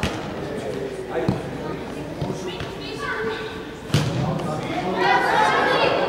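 A football kicked three times, sharp thuds at the start, about a second in and, loudest, about four seconds in, echoing in a large sports hall. Players and spectators shout, louder near the end.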